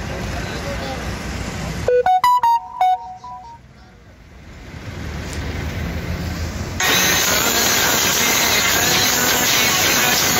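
Road traffic ambience, cut into about two seconds in by a quick run of bright, piano-like notes. After a dip, a loud, dense rushing sound takes over from about seven seconds.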